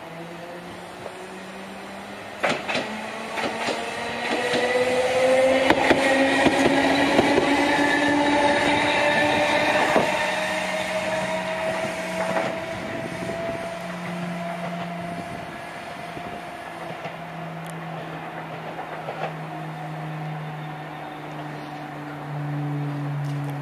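A Chikuho Electric Railway 3000-series articulated tram accelerating past, its traction drive giving a whine that rises slowly in pitch. The wheels click over the rail joints. It is loudest in the middle, then fades as the tram draws away.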